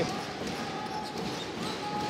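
Live basketball court sound: a ball being dribbled on the hardwood floor in a sparsely filled arena, with a couple of drawn-out squeaks about half a second long each, in the middle and near the end.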